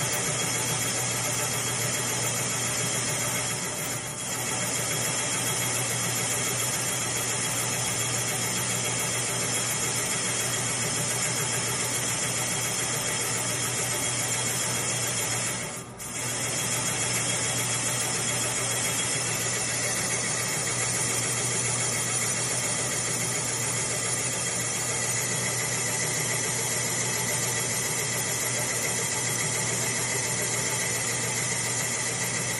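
Serdi 60 valve-seat machine's spindle running as a counterbore cutter machines an aluminium cylinder head out from .800 to .980 inch, a steady whirring with a few fixed tones over a low hum. The sound dips briefly about four seconds in and again about halfway through.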